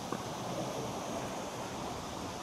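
Steady outdoor ambient noise, an even rushing hiss, with one light tick shortly after the start.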